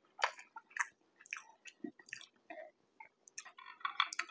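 A man chewing a mouthful of food close to a clip-on microphone: a run of irregular wet smacks and clicks, the loudest a moment after the start.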